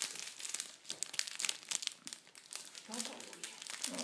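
Foil wrapper of a Pokémon trading card booster pack crinkling in the fingers as it is worked open: a quick, uneven run of small sharp crackles.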